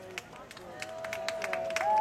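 Scattered hand clapping from a small crowd. A single held voice comes in under a second in and steps up in pitch near the end.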